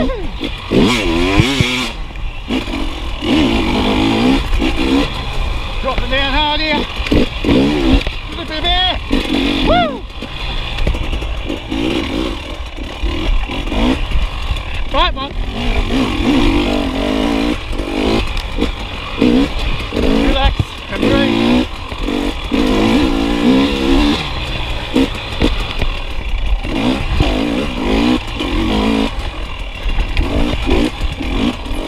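Single-cylinder dirt bike engine being ridden along a rough trail, its revs rising and falling over and over as the throttle is worked on and off.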